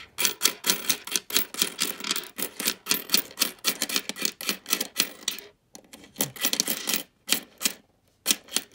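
Nickels clicking and clinking against one another and against a hard tabletop as a roll of coins is pushed apart and spread out by hand. The clicks come in a fast, uneven run, broken by a short pause a little past the middle.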